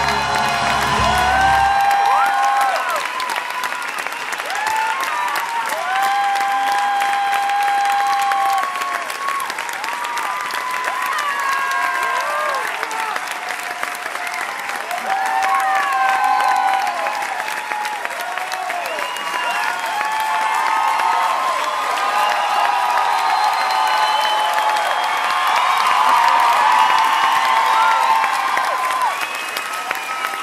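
A theatre audience applauding and cheering, with many voices shouting and whooping over steady clapping. Orchestra music under it cuts out about two seconds in.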